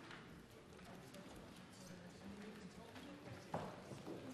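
Faint room sound of a large debating chamber: a low murmur of distant voices with scattered small clicks and knocks, and one sharper knock near the end.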